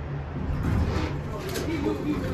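A voice speaking indistinctly over a steady low hum.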